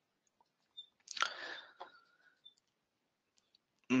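A brief soft breath or mouth noise from the speaker, lasting under a second about a second in, with a couple of faint clicks. Otherwise dead quiet.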